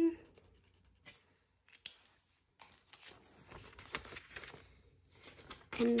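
Faint scratching and rustling of paper: a highlighter pen colouring in a square on a paper savings tracker, with paper and banknotes being handled. A few light ticks come early, and the rustling gets busier about halfway through.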